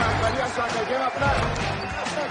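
A basketball bouncing on a court amid a cheering crowd, under dramatic film-score music.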